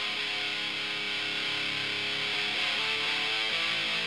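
Music Man StingRay played through a Fault V2 overdrive pedal with its crush toggle on and the gain stacked high: a held note ringing out as a huge, crunchy distortion, steady in level.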